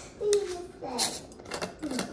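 A child's voice saying a few short, indistinct words, with a couple of light clicks in between.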